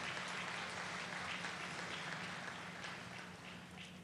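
Audience applause, an even patter of many hands clapping that slowly fades toward the end.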